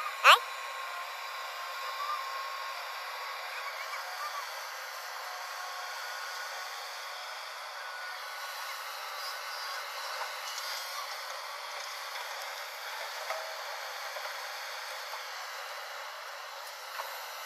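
Steady running noise of a JCB tracked excavator working, digging and loading a tipper truck, heard thin with no low rumble. A brief loud rising sound comes just after the start.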